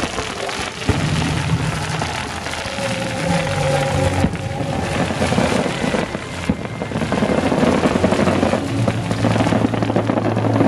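Fireworks going off in a dense crackle, with a sharp bang about a second in, over music playing for the show.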